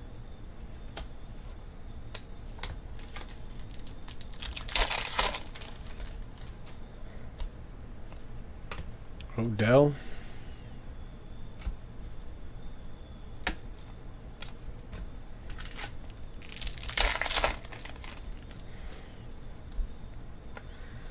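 Trading-card pack wrappers crinkling and tearing open in two bursts, about five seconds in and again near the end, with light clicks of cards being shuffled and handled in between.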